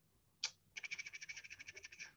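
Computer mouse: one click, then a rapid even run of ticks, about fourteen a second, lasting just over a second.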